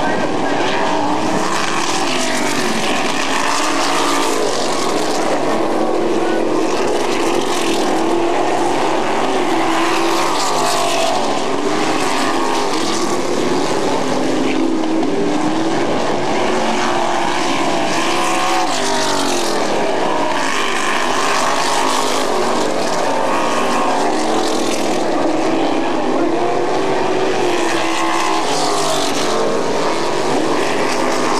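Several winged sprint cars' V8 engines at racing speed on a dirt oval. The pitch rises and falls over and over as the cars pass and get on and off the throttle through the turns.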